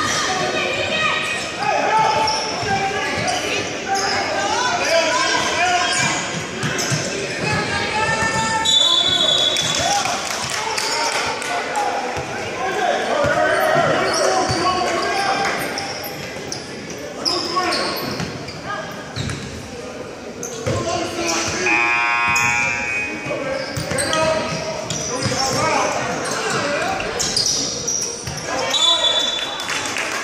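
A basketball bouncing repeatedly on a hardwood gym floor during play, with players' and spectators' voices echoing through the large hall.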